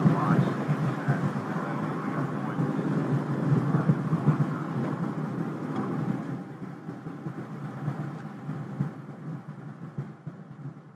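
Steady rushing rumble of a Space Shuttle solid rocket booster in powered flight, heard from the booster's own onboard camera. It dies away over the last few seconds as the booster burns out at separation.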